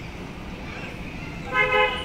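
A horn sounding once, a short steady toot of about half a second near the end, over a steady background hiss.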